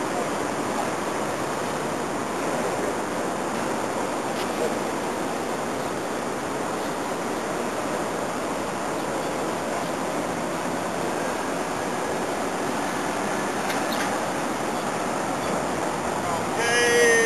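A steady, even rushing noise with no distinct events, broken only by a couple of faint clicks.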